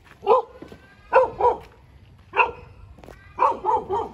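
A dog barking in short, sharp barks: a single bark, then two close together, another single, and a quick run of three near the end.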